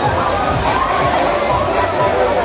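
Riders on a spinning funfair thrill ride screaming and shouting together, over loud fairground music with a steady bass beat of about three thumps a second.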